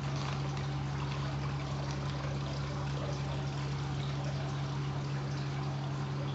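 Water trickling and splashing in a fish tank, steady throughout, over a steady low hum.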